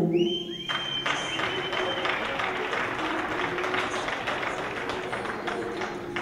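Spectators clapping, with a couple of sharp rising whistles near the start; the clapping slowly dies away.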